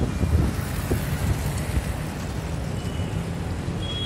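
Motor scooter being ridden along a city street: its small engine running steadily under a dense rumble of road and traffic noise.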